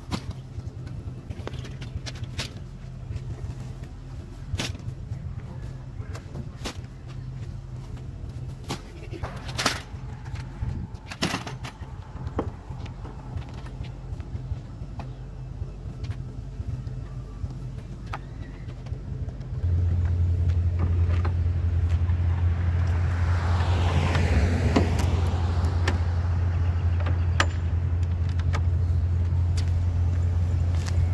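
A steady low vehicle engine hum with scattered knocks and thumps from bags of mulch being unloaded off a flatbed truck. About two-thirds of the way through, the hum suddenly gets louder and deeper, and a car passes a few seconds later.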